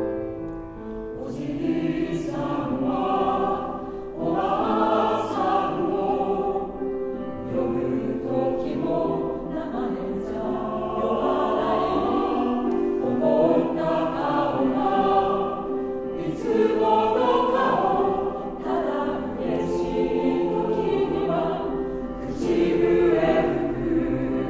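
Mixed choir singing a Japanese ballad in Japanese with piano accompaniment. The choir comes in over the piano about a second in.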